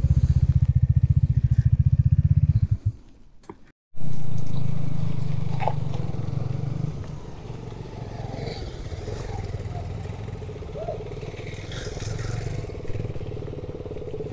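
Motorcycle engine running close up with fast, even firing pulses; it cuts off abruptly about three seconds in. Then motorcycle engines ride slowly up a muddy gravel track, loud at first and settling to a steadier, quieter running.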